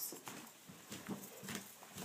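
Footsteps on a hardwood floor: faint, short steps about two a second.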